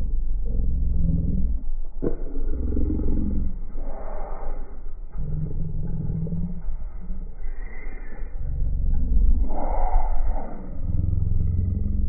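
Low, gusty rumble of wind buffeting the microphone of a handheld recorder, swelling and easing every second or two, with two fuller gusts, one about four seconds in and one near ten seconds.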